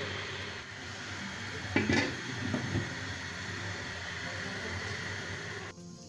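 A lid is set onto a cooking pot with a single short clunk about two seconds in, over faint steady background noise.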